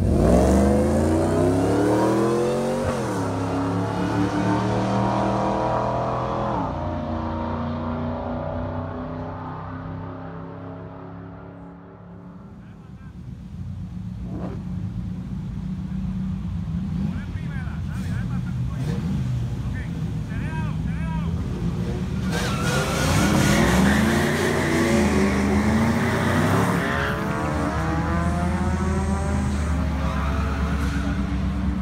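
Supercharged 5.4 L V8 of a Ford SVT Lightning pickup launching hard down a drag strip: the engine note climbs, shifts about three seconds in and again about seven seconds in, then fades as the truck pulls away. Later the engine revs hard again for about four seconds with a broad hiss of tyre noise, a burnout, then settles to a steady idle.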